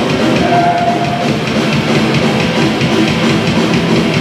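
A live rock band playing loudly, with electric guitars, bass guitar and drum kit together.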